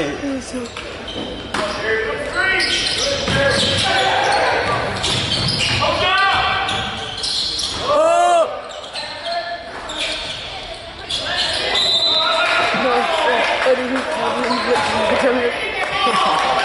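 Indoor basketball game sounds in a gym: a basketball bouncing on the hardwood court and spectators talking nearby. A short squeak that rises and falls comes about eight seconds in.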